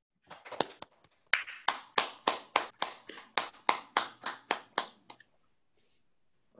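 Hand clapping: a few scattered claps, then a steady run of about fourteen claps at three to four a second, stopping about five seconds in.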